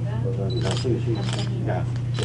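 Several camera shutter clicks from press photographers over low conversation, with a steady low hum underneath.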